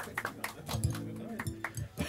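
A few scattered last claps of applause, and about halfway through a short held pitched sound of several steady notes, lasting under a second.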